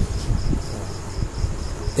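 A cricket chirping in the background, a high even pulsing of about five chirps a second, over low rumble and soft knocks.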